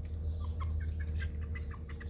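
Young chickens giving soft, short cheeping calls, several in quick succession, over a steady low hum.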